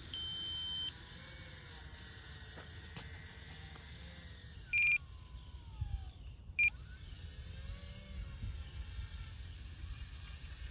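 Electronic beeps from an RC radio transmitter: a steady high tone for about the first second, then a short beep about five seconds in and another shortly before seven seconds. Under them the small electric model plane's motors whine faintly, drifting up and down in pitch as it sits and taxis on the snow, with a low rumble of wind on the microphone.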